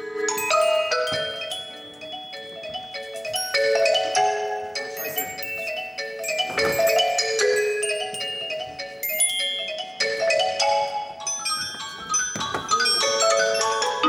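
Marimba and xylophone playing a quick melodic passage of short struck notes, with higher bell-like mallet notes ringing above.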